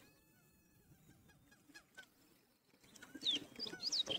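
A quiet hall with faint, distant voices from the audience calling out answers, a little louder near the end.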